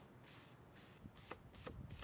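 Near silence: faint room tone, with a couple of soft ticks in the second half.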